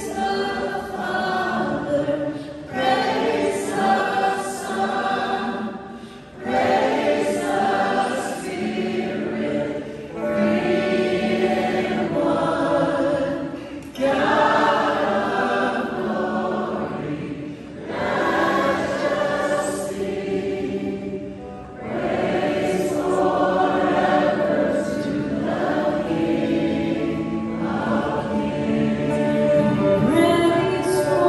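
Live worship band playing a song: a male lead and a female singer sing in phrases of a few seconds with short breaks between them, over acoustic guitar, violin, drums and bass.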